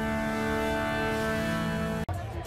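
Music of long held notes over a steady drone.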